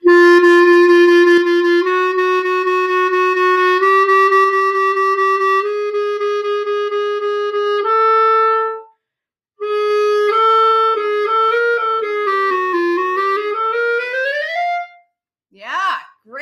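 A Jupiter JCL1100S wooden B-flat clarinet being played: five long held notes, each stepping a little higher than the last. After a short break comes a quicker run of notes that dips down and then climbs to a high note near the end.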